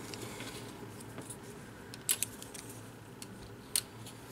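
Wooden popsicle sticks being laid on a cutting mat: a few light clicks and taps, two close together about two seconds in and one near the end, over a faint low hum.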